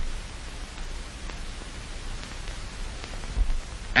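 Steady hiss and low rumble of an old optical film soundtrack, with a couple of brief low bumps. No other sound is heard.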